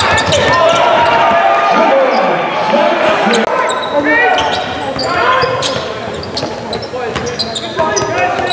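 Live game sound on a hardwood basketball court: the ball dribbling, sneakers squeaking, and players' and coaches' voices calling out.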